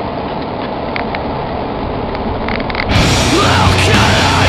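Steady road and engine noise inside a moving car's cabin for about three seconds, then loud heavy rock music cuts in abruptly near the end.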